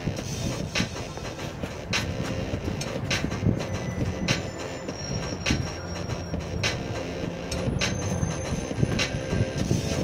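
A dance-music beat plays from a speaker, with a sharp hit about once a second, over the low rumble of a passing articulated bus. A thin high squeal sounds from about four to seven seconds in and briefly again near eight seconds.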